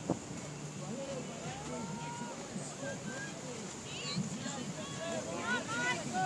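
Fast river water rushing steadily, with faint voices of people calling out over it.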